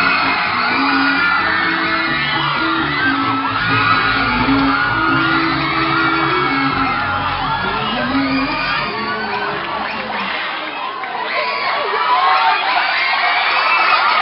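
Dance music playing with an audience cheering and whooping loudly over it; the music's low notes drop out about ten seconds in while the cheering goes on.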